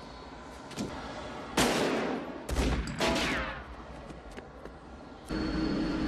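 Two loud gunshots from the film soundtrack, about a second and a half apart, each echoing away. They are followed a little past five seconds in by a jet aircraft engine's steady noise with a high whine.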